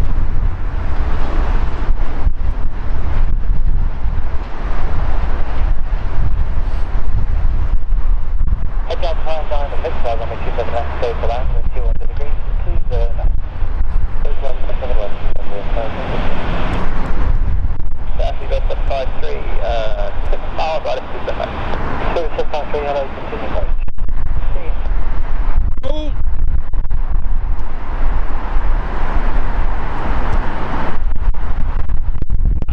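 Strong wind rumbling on the microphone over the drone of an approaching Airbus A380's four jet engines, with people talking at intervals.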